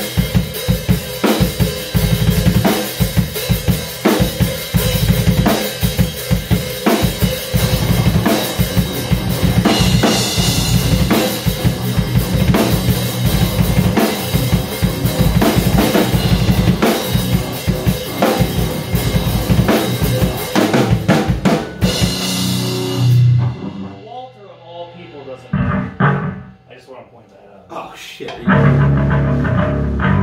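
Live band playing loud in a small room: drum kit with bass drum, snare and cymbals under electric guitars and bass. The full band stops about 22 seconds in, and after a short lull single guitar and bass notes start again near the end.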